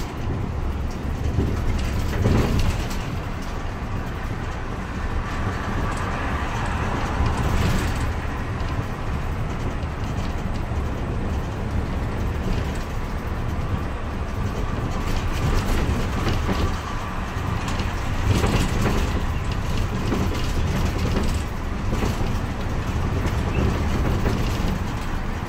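Interior noise of a Hyundai natural-gas town bus under way: a steady low engine and road rumble, with a few short knocks from the cabin.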